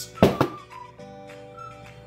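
A VHS tape dropped into a cardboard box: two quick thuds close together about a quarter second in. Background music with a few held notes follows.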